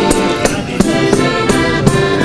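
Large tambourine (tamburello) beaten by hand in a steady rhythm, about three jingling strikes a second, over a held melody in traditional folk music.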